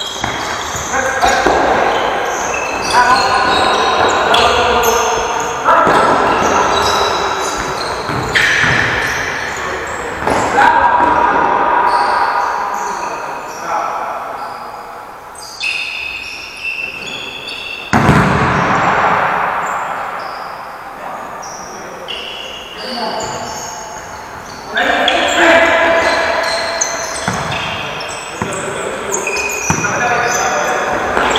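Futsal ball being kicked and bouncing on a sports-hall floor, with sharp hits ringing out in the hall's echo, and players calling out to one another.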